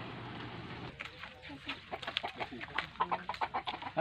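Chickens clucking in short, rapid calls from about a second in, after a steady low hum stops.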